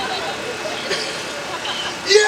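Street ambience: a crowd murmuring over traffic noise, with faint scattered talking.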